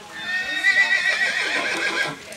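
A horse whinnies once: a long, high call with a quavering pitch, lasting nearly two seconds.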